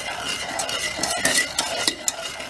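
Wooden spoon stirring a thick sugar, water and golden syrup mixture in a small stainless steel saucepan, with repeated scraping strokes against the pan. The heat is not yet on, so the pan is not bubbling.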